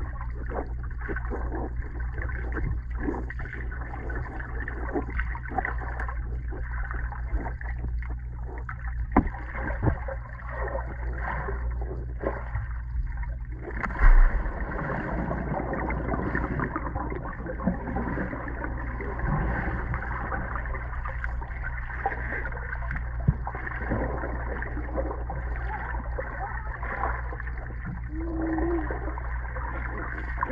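Swimmers moving in a pool heard from underwater: a muffled, steady low rumble with bubbling, splashing and small knocks. One louder thump comes about halfway through.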